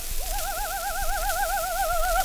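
A coloratura soprano on an acoustic-era Berliner gramophone disc holds a high note that starts just after a short break and wavers quickly and evenly in a trill. The singing sits over steady record surface hiss.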